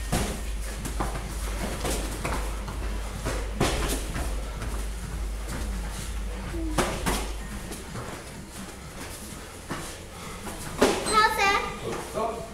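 Scattered dull thuds of gloved punches, kicks and feet landing on foam mats during a light-contact kickboxing bout, over a low steady rumble in the first half. Near the end a voice calls out briefly, rising and falling.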